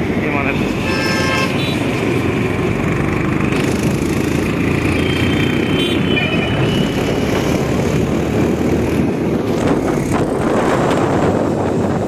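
Wind rushing over the microphone and a motorcycle running while riding through road traffic. A vehicle horn honks for about a second near the start, and another brief horn sounds around five seconds in.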